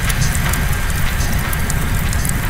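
Opening of a doomcore track: a rain-like crackling noise over a dense, low rumbling drone.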